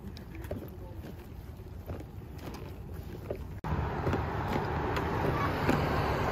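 Low, steady rumble of stroller wheels rolling over a concrete sidewalk, with wind buffeting the microphone. About three and a half seconds in it cuts off for an instant and comes back louder.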